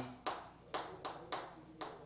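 Chalk knocking against a chalkboard as characters are written: a row of sharp taps about every half second.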